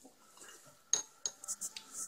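A spoon clinking against a bowl while eating: a few light, quick clinks in the second second, after a quiet start.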